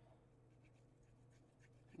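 Near silence: room tone with a low steady hum and a few faint light ticks of paper and a glue bottle being handled.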